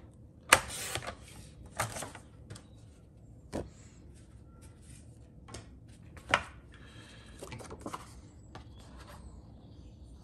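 Sliding-blade paper trimmer cutting cardstock: a sharp click and a short scraping slide of the cutter about half a second in, and another around two seconds in. Later come scattered clicks and the rustle of card being handled.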